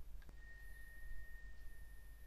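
Faint background noise of the recording: a low hum and, after a faint click shortly in, a thin steady high-pitched whine.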